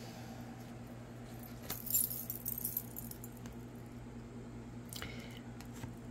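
Tarot cards being handled and shuffled: soft papery flicks and rustles, busiest about two seconds in, with another brief flick near the end. A faint steady low hum runs underneath.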